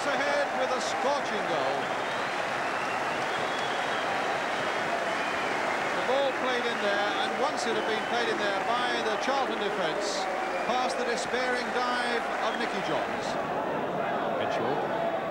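Football stadium crowd noise: many voices shouting and chanting at once, with scattered clapping, holding at a steady level.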